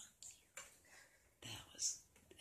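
Quiet whispering: a few short, breathy words, the loudest near the end.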